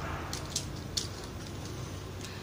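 A few faint, sharp clicks over low background noise as a plastic Beyblade spinning top is handled.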